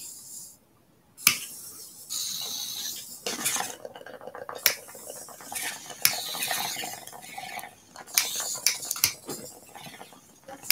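Sharp clinks and taps of a bong slider being handled and fitted into a glass bong, with scraping between the clinks.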